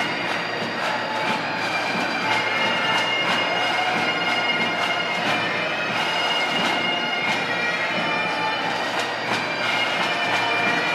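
Bagpipes playing a processional tune over their steady drones.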